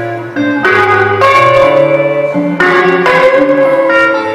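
Amplified hollow-body electric guitar played solo: four loud chords struck about a second in, near the middle, and twice near the end, each left ringing with a long sustain over a held low note.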